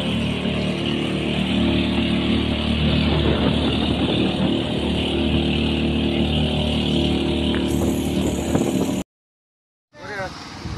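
Outrigger fishing boat's engine running steadily under way, with a steady hiss over it. The sound cuts off abruptly about nine seconds in.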